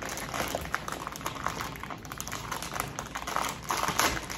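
Plastic cheese packaging crinkling and rustling as it is handled, a dense, irregular run of small crackles.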